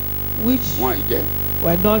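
Steady electrical mains hum carried through the microphone and sound system, with brief fragments of a man's voice over it.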